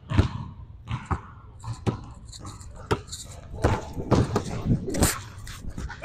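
A basketball dribbled on a hardwood gym floor: a string of irregular, sharp bounces with footsteps, during one-on-one play.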